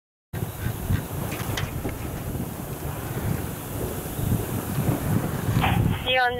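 Wind buffeting the camera microphone outdoors on a ski slope: a heavy, fluctuating low rumble with hiss that starts abruptly a moment in.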